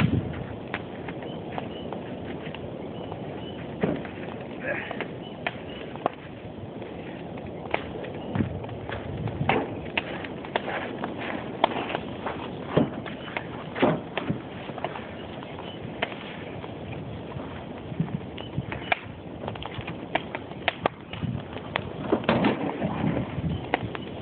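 Wooden-furniture bonfire burning with a steady rush and frequent sharp crackles and pops. Footsteps on gravel pass close by around the middle.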